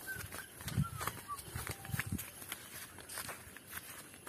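Footsteps on a grassy dirt path, a series of irregular soft thuds. A few short, high chirps sound over them in the first second and a half.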